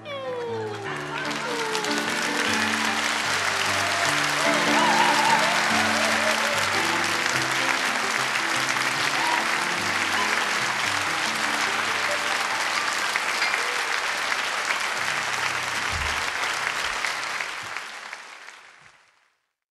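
A theatre audience applauding steadily, over sustained closing chords from the stage band. The applause fades out near the end.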